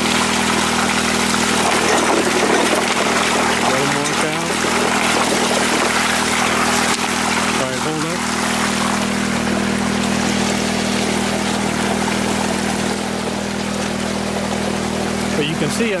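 Water pouring into a highbanker's metal header box and rushing down the sluice, over the steady hum of an engine running at constant speed.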